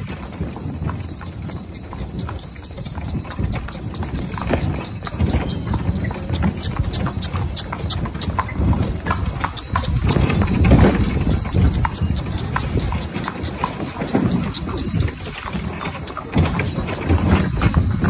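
A harnessed mare's hooves clip-clopping at a walk on a street of packed earth as she pulls a cart. There is a steady low rumble under the hoofbeats.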